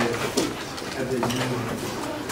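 A low, indistinct voice murmuring in short stretches, too faint to make out words, with a few light clicks.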